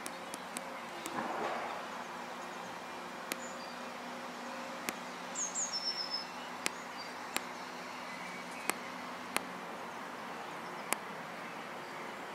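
Outdoor ambience with a steady low hum and sharp ticks about every second, and a brief high bird chirp of two or three falling notes about five and a half seconds in.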